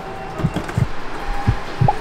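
Music with a steady low beat of about three beats a second, with a couple of short held electronic tones.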